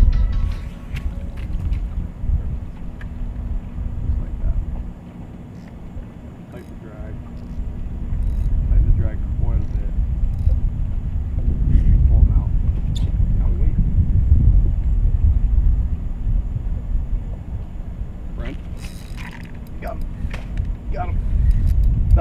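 Wind noise on the microphone, rising and falling, with a faint steady hum underneath and a few faint voices.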